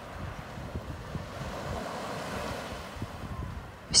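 Sea waves breaking and washing ashore: a steady rush of surf with a few faint clicks.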